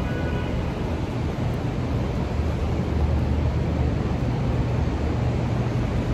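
Steady city street noise: a constant low traffic rumble under an even wash of outdoor sound.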